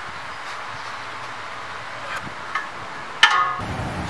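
A hand tool working at a suspension ball-joint nut: a few faint metal ticks, then a short, sharp metallic clink with a brief ring about three seconds in.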